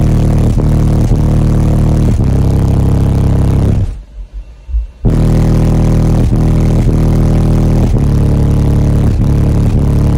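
Very loud bass-heavy music played through a subwoofer car audio system inside a truck cab, with a beat about twice a second. The music cuts out for about a second a little before halfway, then comes back in.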